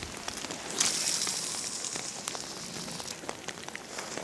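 Light rain pattering on a river surface, many small drop clicks over a faint hiss. About a second in, a stronger high hiss rises suddenly and fades away over the next second or so.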